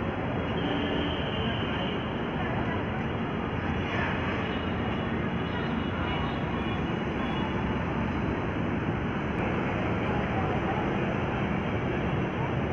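Steady outdoor background noise: a low rumble typical of traffic, with faint voices mixed in.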